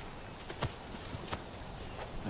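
A horse walking, with a few soft hoof clops over a low steady background.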